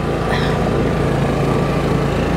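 2015 Honda Forza 300 scooter's single-cylinder engine running steadily while riding at low speed.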